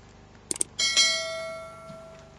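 Subscribe-button sound effect: a quick double mouse click, then a bright notification-bell ding that rings and fades over about a second.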